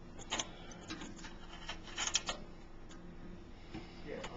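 A few light metallic clicks and rubbing as a small wrench works the brass compression nut on the autoclave's temperature gauge fitting, refitting the gauge.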